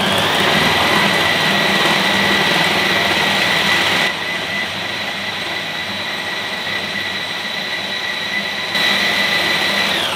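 Bosch food processor motor running at speed, chopping a full bowl of raw meat and vegetables, with a steady high whine over the churning. It is quieter for a few seconds in the middle, then winds down at the end as it is switched off.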